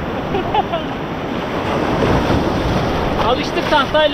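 Small breaking waves and whitewater rushing and washing through shallow water, a steady surf noise.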